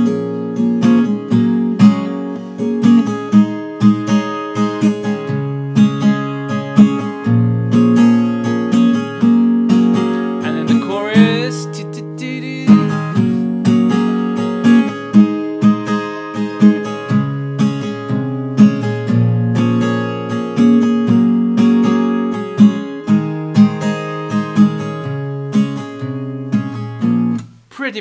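Crafter steel-string acoustic guitar, capoed at the sixth fret, strummed in a steady rhythm through a G, Em7, Cadd9 and D chord progression. The strumming stops just before the end.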